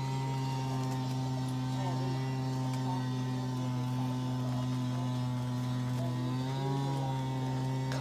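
Steady, unchanging low electrical hum with a faint higher whine riding on it.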